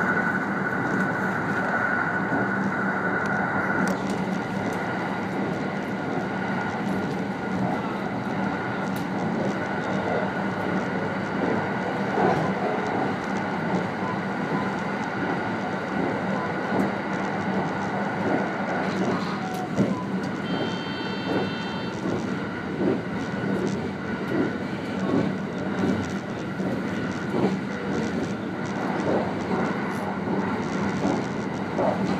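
Electric train running at speed, heard from the cab: a steady rumble of wheels on rail with a faint high whine in the first few seconds. There is a brief high tone about twenty seconds in, and a run of rhythmic clacks over rail joints toward the end.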